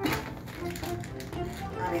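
Background music, with rustling and small clicks from a plastic bag of dog treats being worked open by hand.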